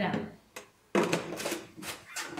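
Hard plastic clicks and knocks as a screw cap is handled and fitted onto a plastic chemical bottle: a quick cluster of sharp clicks starting about a second in.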